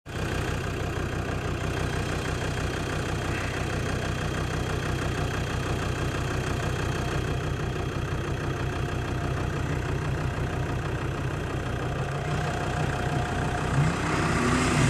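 Jeep Cherokee XJ engine running steadily at low revs as the 4x4 creeps down a steep sandy slope.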